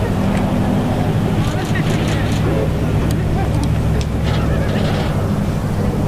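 A steady low hum or rumble, with scattered voices of people in the background.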